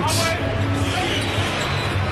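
Steady basketball-arena crowd noise with a low hum underneath, and a basketball being dribbled on the hardwood court.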